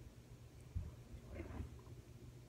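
Faint handling sounds of a thin, damp paper tissue being held and moved: a soft low bump a little under a second in, then a brief light rustle around halfway.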